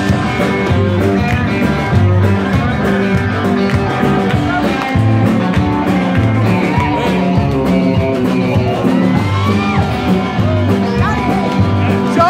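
Live rock band playing loud, with electric guitar over a bass line and drums.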